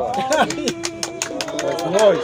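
Voices mixed with music-like held tones, over a quick run of sharp clicks.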